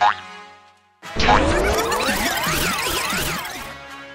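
Cartoon sound effect: a rising glide with warbling tones that swoop up and down, lasting about two and a half seconds, coming in after a single music note fades out.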